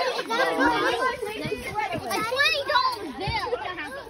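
Excited chatter and laughter from a group of children and adults, many voices overlapping, some high-pitched.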